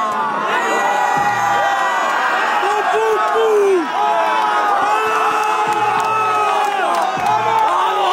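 A large crowd cheering, whooping and shouting, many voices overlapping loudly.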